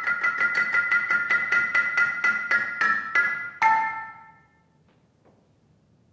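Solo marimba played with mallets: fast repeated strokes, about four a second, on a pair of high notes. A last stroke about three and a half seconds in rings and dies away, followed by a silent pause of about a second and a half.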